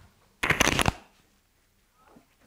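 A man's single short cough close to a handheld microphone, a loud rough burst of about half a second.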